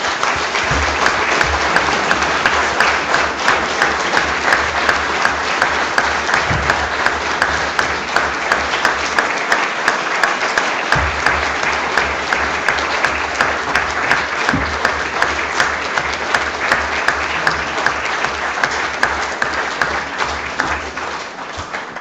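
Audience applauding, a loud, dense clapping with a regular beat of about two claps a second running through it, thinning out near the end.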